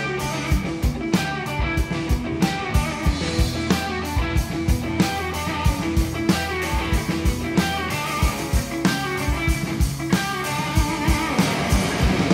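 Live rock band playing an instrumental passage with no vocals: two electric guitars over bass guitar and a drum kit keeping a steady beat.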